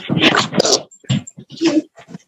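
A dog barking in a series of short, loud bursts, picked up through a video-call participant's open microphone.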